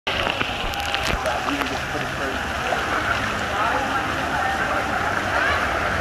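Water of a lazy river sloshing and lapping around a camera held at the surface, a steady wash of noise, with faint voices of other swimmers in the background.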